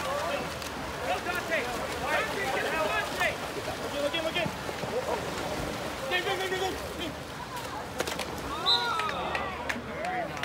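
Several voices shouting and calling over one another, over the steady splashing of water polo players swimming.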